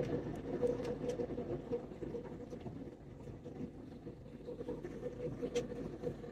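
Airliner cabin noise in cruise: a steady low rumble of jet engine and airflow, with a faint steady hum running through it.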